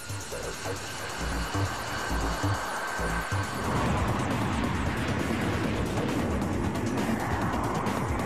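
Lockheed YF-22 prototype's twin jet engines at full power with afterburners lit for takeoff: a rushing jet noise that builds over the first few seconds and then holds steady, with a thin high whine that fades out about halfway. Music plays underneath.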